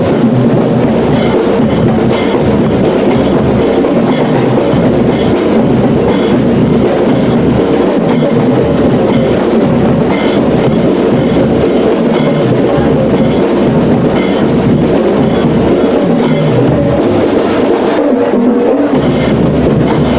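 A marching brass band playing loudly. Sousaphones, trumpets and trombones play over a steady beat of drums and crashing hand cymbals.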